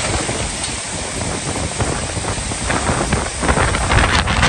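Steady rushing noise of muddy floodwater and debris flowing down the slope, with wind buffeting the microphone in uneven low rumbles.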